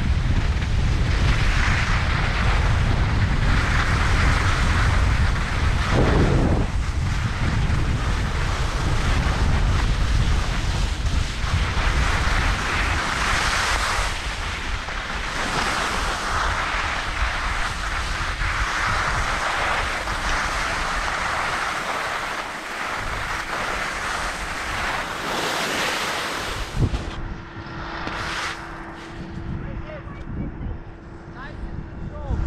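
Edges scraping and hissing over packed, choppy snow during a fast downhill run, swelling and fading every couple of seconds with the turns, under heavy wind buffeting on the camera's microphone. Near the end the snow noise eases and a single knock is followed by a steady low hum.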